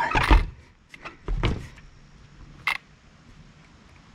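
Plastic clacks and knocks from an Arrma Notorious RC monster truck's chassis and suspension being handled and set down: a loud clatter at the start, another knock over a second in, and a short click shortly before the end.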